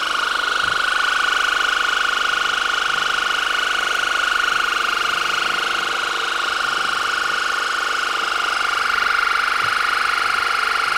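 Electric water-jet ear irrigator running steadily as it pumps a stream of water into the ear canal to flush out impacted earwax: a constant high motor whine with a slight fast pulsing and a hiss of water.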